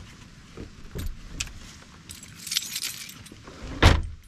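Gear being handled in the open rear load area of an SUV: a few light clicks, then a jangling metallic rattle like keys or buckles, and a heavy thump near the end.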